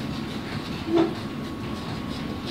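Steady background noise of a factory floor, with one short sound about a second in.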